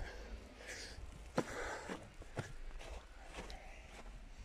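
Footsteps on snow, about two steps a second, with one sharper, louder knock about a second and a half in.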